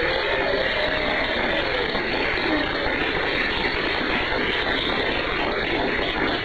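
Live studio audience applauding the panel's welcome: a steady wash of clapping that sounds thin and band-limited because it is received over shortwave radio.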